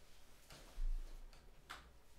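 Faint sounds in an unattended room: a few light clicks and a dull low thump about a second in.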